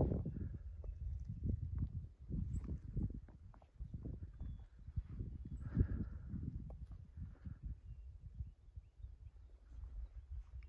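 Footsteps of a hiker walking on a dirt trail: soft low thuds at a steady walking pace, about two a second.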